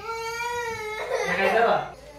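A young boy crying: one long wail held on a steady pitch for about a second, then a louder, rougher sob that breaks off near the end.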